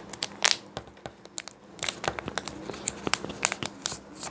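Wrapper of a Kinder Joy egg crinkling and tearing as it is peeled off by hand, in many small irregular crackles.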